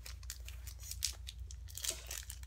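Foil Pokémon card booster pack being crinkled and torn open by hand: a quiet run of small crackles and rips.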